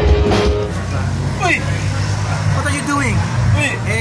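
Loud live rock band music that gives way about a second in to men's voices talking over a steady low hum.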